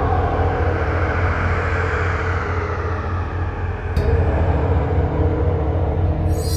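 Sound design for an animated logo intro: a deep, sustained bass rumble under a slowly falling whoosh, with a sharp hit about four seconds in.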